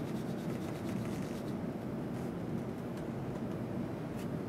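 Plastic test-well holder being gently shaken by hand on a cardboard sheet, faint scuffing and rubbing over a steady low hum. The scuffing thins out after about a second and a half.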